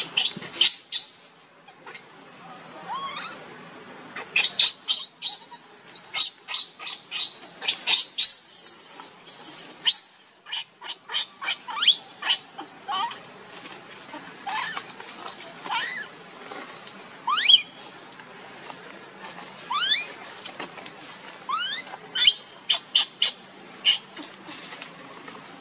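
Baby macaque screaming in short, high-pitched squeals. They come in rapid runs early on, then as separate calls a second or two apart, many rising sharply in pitch. These are distress cries of an infant being pushed away by its mother when it tries to nurse.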